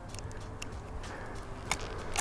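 A few faint clicks of metal pliers working a treble hook loose inside a musky's jaw, over a low steady background rumble.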